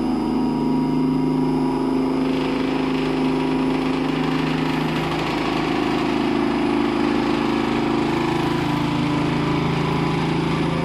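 Rousselet Robatel DRC50 vertical decanter centrifuge, its stainless bowl belt-driven by a 7.5 hp electric motor, running up to speed on a variable frequency drive ramp at around three quarters of its 1750 RPM target. It makes a steady mechanical hum with several droning tones that shift about halfway through and again near the end.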